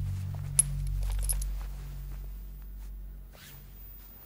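Two light metallic clinks, each with a short high ring, about half a second and just over a second in. Under them a low sustained drone fades away.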